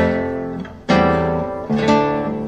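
Solo classical guitar playing full chords, one struck at the start and another about a second later, each ringing and fading away, with lighter plucked notes near the end.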